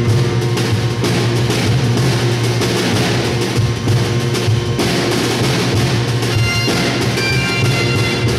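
Folk band playing a tune on bagpipes, snare drum, bodhrán and acoustic guitar. A steady bagpipe drone runs under the drum beats, and the pipe melody comes through more clearly near the end.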